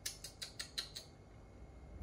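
Wrapper of a Cadbury chocolate bar crinkling and crackling as fingers peel it back, a quick run of sharp crackles in the first second that then fade.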